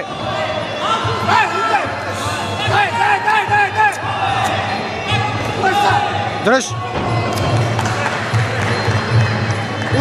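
Men shouting instructions and encouragement from ringside at a Muay Thai bout, echoing in a large sports hall, with a shout of "Hold!" about six seconds in. Dull thuds of punches and kicks landing on the fighters are mixed in.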